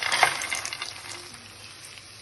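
Hot mustard oil and green chilli sizzling as a pile of fox nuts (makhana), peanuts and flattened rice (poha) is tipped into the frying pan. The sizzle and rattle are loudest about a quarter second in, then die away.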